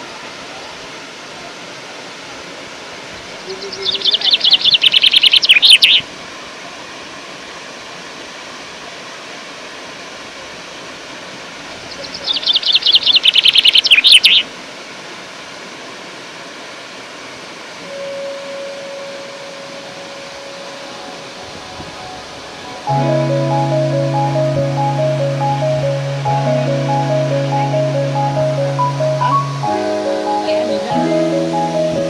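Steady rush of a waterfall, broken twice by a loud burst of rapid trilling from a bird, about four and about twelve seconds in, each lasting two to three seconds. Background music with steady notes and a beat comes in after about twenty-three seconds.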